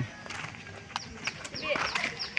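People talking in the background, with scattered light clicks. In the second half come short high chirps, repeated about every fifth of a second.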